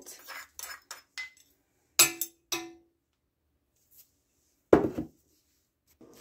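Metal measuring spoons clinking lightly, then two sharp taps against a stainless steel stock pot about half a second apart, each ringing briefly, as salt is knocked off the spoon. A single heavier thump follows a little before the end.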